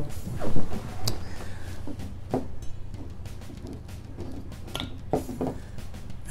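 Scattered knocks and clicks of things being handled and set down on a wooden table, over a steady low hum.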